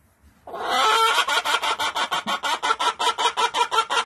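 A hen cackling: a fast, unbroken run of clucks, about six or seven a second, starting half a second in.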